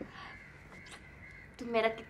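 Quiet room tone with a faint, steady high-pitched hum for over a second and a half, then a woman starts speaking near the end.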